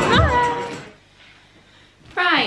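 A short voiced call that glides up and then down in pitch, over background music, ending about a second in. After it, quiet room tone.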